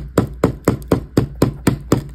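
Packed cornstarch chunk crunching in a quick even rhythm, about four sharp crunches a second.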